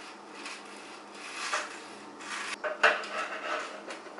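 A knife sawing through a toasted bread sandwich on a wooden board, the crisp crust rasping in several strokes, with one sharp knock near the end.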